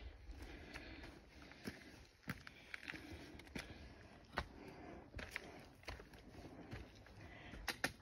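Faint, irregular footsteps of a hiker on a gritty, rocky trail: soft scuffs and crunches of boots on grit and stone.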